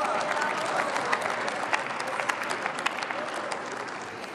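Members of parliament applauding: many hands clapping in a dense patter that tapers off toward the end.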